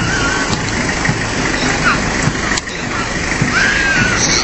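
Small Isuzu fire truck's engine running as it rolls slowly past at close range, a steady low rumble, with voices mixed in.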